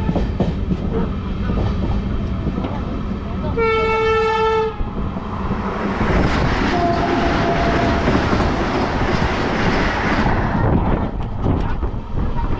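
Train running on the rails with a steady rumble and wheel clatter while a freight train of hopper wagons passes on the next track. A train horn sounds once for about a second, about four seconds in. A rushing noise swells from about six seconds and drops near ten.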